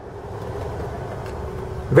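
Steady low rushing noise that grows slightly louder, with no distinct tone, rhythm or sharp knocks.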